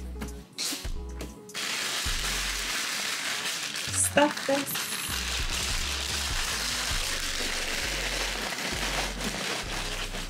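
Kraft packing paper rustling and crinkling steadily as it is handled, starting about a second and a half in and stopping shortly before the end, over background music with a bass line.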